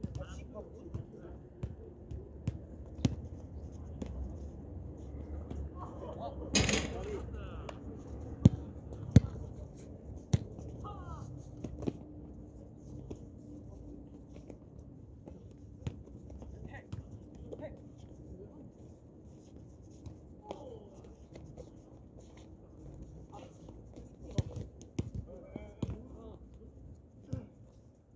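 Basketball bouncing on a hard outdoor court in scattered sharp thuds, the two loudest about eight and nine seconds in, with players' voices in the background.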